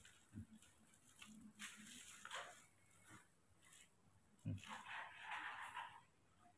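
Faint handling noises while a baby macaque is bottle-fed: soft rustles of cloth and bottle, a bump about four and a half seconds in, and a longer rustle near the end.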